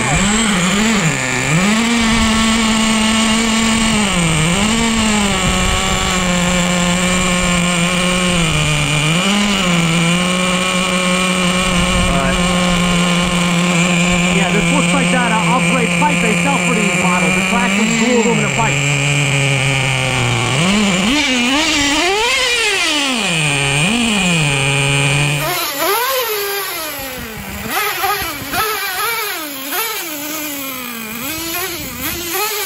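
The 3.3 two-stroke nitro engine of a Traxxas Nitro Sport RC truck runs loudly at steady high revs, with the rear wheel spinning, and drops and picks up again several times. Near the end it revs up and down in several short throttle blips, more quietly.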